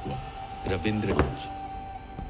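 Hindi voice-over narration finishing a sentence, ending a little over a second in, over soft background music with a steady held note that carries on after the voice stops.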